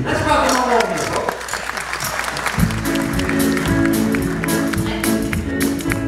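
Audience applause, with a voice over it in the first second; about two and a half seconds in, the acoustic guitar and band come in with steady held chords of the song's intro.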